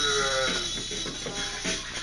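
Electric guitar being played, with held, slightly wavering notes.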